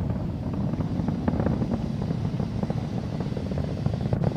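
Falcon 9 first stage's nine Merlin engines burning through Max Q: a steady low rumble with faint crackling. The engines are throttled back at this point for the period of highest aerodynamic pressure.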